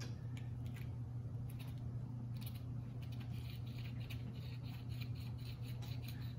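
Small skate-wheel-style herb grinder being twisted by hand, with faint, irregular scratchy crackles as cannabis flower is ground inside. A steady low hum runs underneath.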